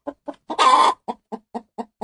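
A hen clucking: a run of short clucks, about four a second, broken by one longer, louder squawk about half a second in.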